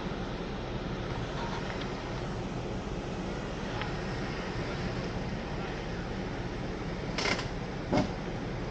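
Jeep Wrangler engines running at crawling speed on a rocky off-road trail: a steady low rumble under a rushing noise. A short hiss comes about seven seconds in.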